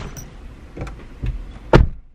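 A car door shut with a single loud thud near the end, heard from inside the car's cabin, after a few lighter knocks and rustles from someone at the open door.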